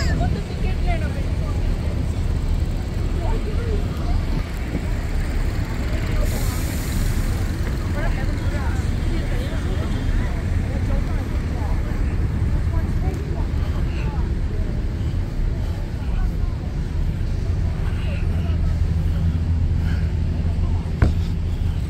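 City street ambience: a steady low rumble of road traffic and buses, with snatches of passers-by talking. A brief hiss comes about six seconds in.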